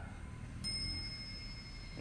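Antique French clock's striking mechanism hitting once: a single sudden metallic ding about half a second in, ringing on with a high steady tone. It is the clock's single strike at the half hour, a sign its movement is running.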